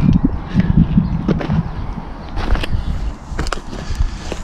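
Camera handling and movement noise: an uneven low rumble on the microphone as the camera is turned, then several sharp clicks and rustles in the second half as the crop-cover netting over the bed is grabbed and pulled back.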